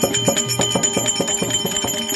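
Folk percussion accompaniment in a quick, even beat of about five strokes a second. A drum plays low notes under small metal percussion that rings steadily throughout.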